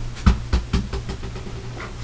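Four short knocks and thumps in quick succession in the first second, from objects being handled and set down, over a steady low hum.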